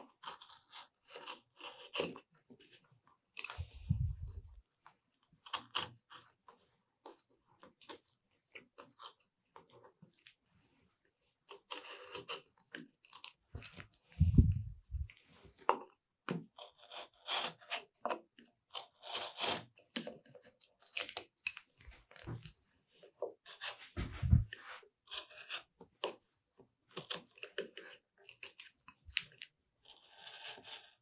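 Small carving knife trimming excess double-sided tape along the edge of a mahogany cutout: a string of short, irregular crunchy cuts and scrapes. A few dull thumps break in, the loudest about halfway through.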